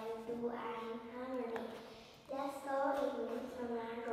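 A young girl speaking into a handheld microphone in a high child's voice, with a short pause about two seconds in.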